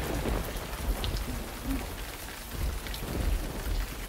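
Thunderstorm sound effect: steady heavy rain with low thunder rumbling underneath. It cuts off suddenly at the end.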